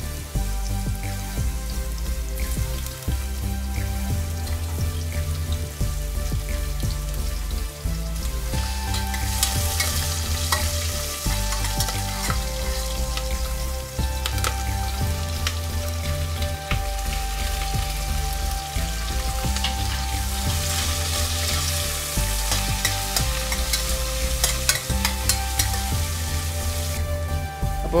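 Chopped garlic and ginger, then sliced onions and green chillies, sizzling in hot oil in a steel pressure cooker and stirred with a spoon. The sizzle grows louder at times.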